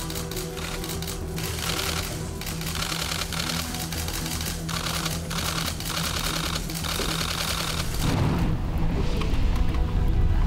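Background music with steady low notes under a dense, rapid clatter of clicks. The clicks stop about eight seconds in, and a low rumble comes in.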